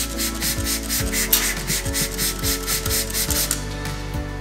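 Trigger spray bottle pumped rapidly into a stainless butterfly valve, giving a quick series of short spritzes, about six a second, which stop shortly before the end. Background music with a steady beat plays underneath.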